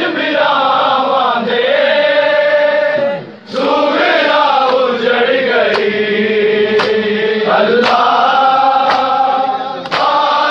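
Men's voices chanting a noha (a mourning lament) with long held notes. From the middle on, sharp chest-beating slaps of matam land about once a second.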